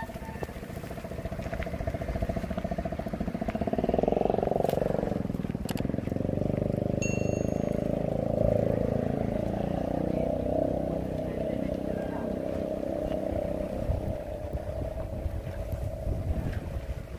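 Wind rushing over the microphone of a camera carried on a moving bicycle, a steady, uneven rumble. Tyres roll over a wet, slushy road.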